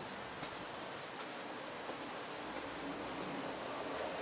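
Steady background hiss, with a few faint ticks scattered through it.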